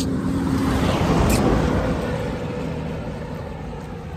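A road vehicle passing close by: its noise swells to a peak about a second in and then slowly fades away.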